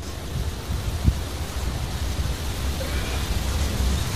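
Steady outdoor noise with wind rumbling on the microphone, and one short knock about a second in.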